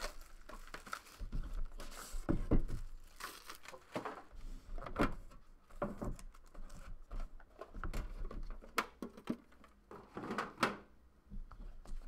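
Clear plastic shrink wrap crinkling and tearing as a sealed trading-card box is unwrapped, with irregular rustles and light taps as the box and a foil card pack are handled.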